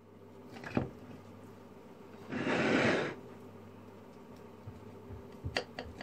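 A knife and plate as a crisp potato börek is sliced: a knock under a second in, a short scraping rasp about two and a half seconds in, then light ticks near the end as the blade cuts through the crust and touches the plate.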